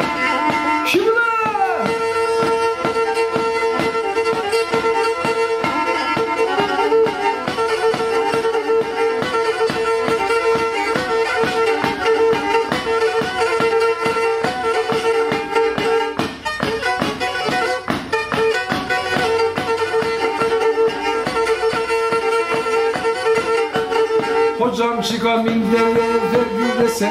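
Black Sea kemençe, a small bowed folk fiddle, played solo in a fast, even rhythm of short bow strokes over a steady held note.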